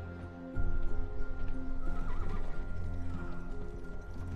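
Horse hooves clip-clopping, starting about half a second in, with a horse whinnying around two seconds in, over background score music.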